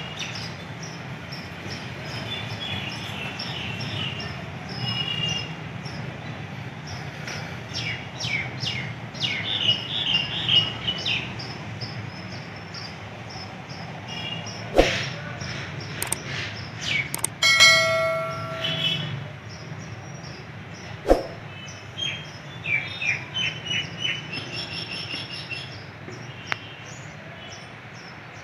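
Small birds chirping in quick repeated bursts among the courtyard trees, over a steady low hum. A few sharp knocks sound in the middle, and a short ringing tone about two-thirds of the way through.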